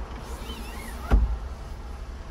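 The Smart car's small petrol engine idling, a steady low rumble heard inside the cabin. A few faint squeaks come in the first second, and a single sharp thump just past a second in is the loudest sound.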